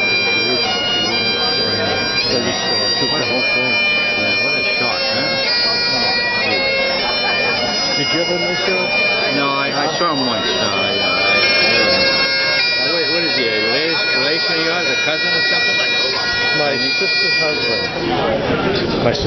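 Great Highland bagpipes playing a tune: the chanter's melody moves from note to note over the steady drones, at an even, loud level.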